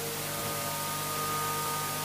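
Steady electrical hum and hiss from a public-address sound system.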